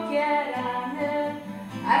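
Sung poetry with acoustic guitar: a female voice holds and bends a sung note over strummed guitar, and a sharp attack near the end starts the next line. It is recorded on a mobile phone, so the sound is thin.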